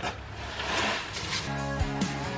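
A rushing hiss of limestone sliding out of a tipped wheelbarrow into a hole. About one and a half seconds in, background guitar music comes in and takes over.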